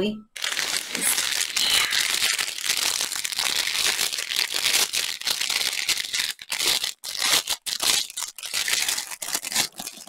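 Clear plastic bag full of small baggies of diamond painting drills crinkling as it is handled and unrolled by hand, the crackle running almost without a break, with a few short pauses in the second half.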